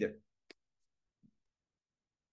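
The tail of a man's spoken word, then near silence broken by one faint click about half a second in.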